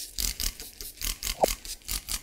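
Trigger spray bottle squirting sanitizer onto a stainless steel work surface: a rapid run of about a dozen short spritzes, some six a second.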